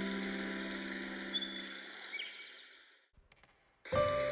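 A piano's last chord dying away with a few bird chirps over it, fading to near silence about three seconds in. The next piano piece starts at the very end.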